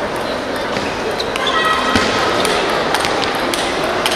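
Table tennis ball clicking off the bats and table during a rally, a quick series of sharp ticks that come mostly in the second half, over the steady murmur of spectators talking in the hall.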